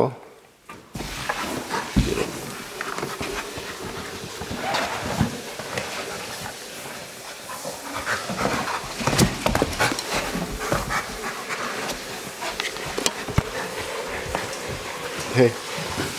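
A Rottweiler panting as it mouths and paws a hard plastic Jolly Ball, with scattered knocks and scrapes from the ball being handled.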